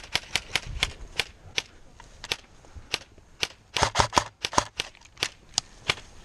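Airsoft electric rifles firing single shots: a string of sharp cracks at uneven intervals, with a quick cluster of several about four seconds in.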